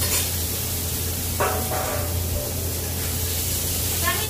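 Meat sizzling in a frying pan over a gas burner, a steady hiss, with the low steady hum of the kitchen's extractor fan underneath and a brief metallic ring about a second and a half in.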